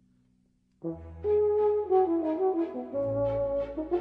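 Solo French horn playing a quick succession of notes over sustained low accompaniment, entering about a second in after a near-silent pause.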